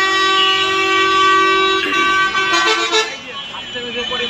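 A vehicle horn sounding one long steady note for about three seconds, then stopping.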